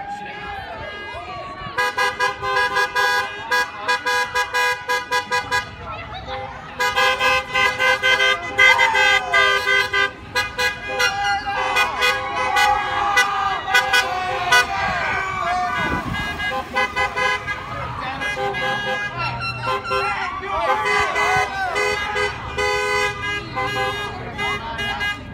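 Car horns honking from passing vehicles: several bursts of rapid short toots lasting a few seconds each, with more than one horn pitch sounding together. People shout and cheer over the honking.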